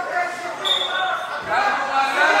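Shouting voices echoing in a large gym hall, with a short high squeak under a second in and a dull thump of bodies on the wrestling mat about one and a half seconds in.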